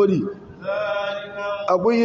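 A voice chanting: a short falling phrase, then one long held note of about a second, in the intoned style of religious recitation.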